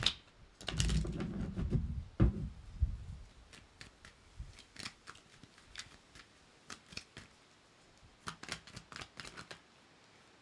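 Tarot cards being handled: a fuller rustle of the deck for the first couple of seconds, then scattered dry card flicks and snaps, with a quick run of card taps and riffles near the end.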